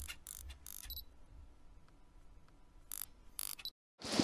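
Faint mechanical clicks: a handful in the first second and two or three more near the end.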